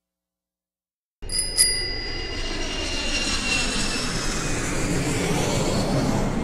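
After about a second of silence, a bicycle bell dings twice in quick succession and its ring fades over the next few seconds. A steady rumbling background noise starts with it.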